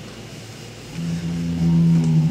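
Live concert recording: faint room noise and tape hiss, then about a second in a loud, steady low note with overtones comes in and is held.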